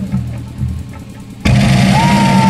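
Live stage-band music: a low bass line plays and thins out, then the full band comes in loudly and suddenly about one and a half seconds in, with a long held note starting near the end.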